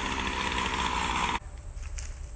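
Petrol string trimmer (weed eater) engine running steadily, then the sound cuts off suddenly about two-thirds of the way through, leaving quiet outdoor background.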